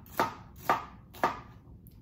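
Kitchen knife chopping green bell peppers on a cutting board: three sharp strokes about half a second apart.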